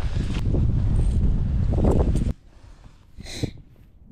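Wind buffeting the microphone, a loud low rumble mixed with rustling, which cuts off abruptly a little over two seconds in. One short higher noise follows near the end.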